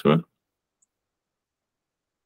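A man's voice finishing a short phrase, then silence.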